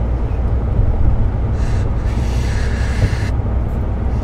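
A first-time player blowing into a zurna without sounding a proper note: a breathy hiss of air through the instrument lasting about a second and a half, starting about a second and a half in, which she takes for air leaking around the reed. The low rumble of the moving car runs underneath.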